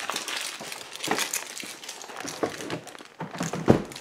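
Rustling and crinkling handling noise with scattered small clicks, and a dull knock shortly before the end.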